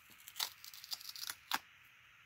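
A narrow adhesive-backed strip of green glitter paper being peeled off a white cardstock card in several short pulls, giving a few brief tearing crackles as the adhesive lets go. The last crackle comes about a second and a half in.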